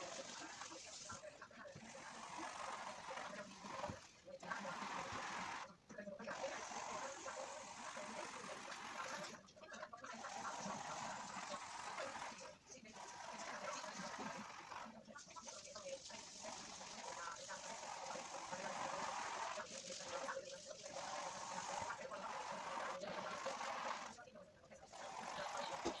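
Pencil scratching on paper in rapid hatching strokes, a dry scratchy sound with short breaks every few seconds as the pencil is lifted.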